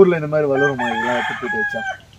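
A rooster crowing once, a long held call of about a second that starts partway in and tails off near the end, over a person talking.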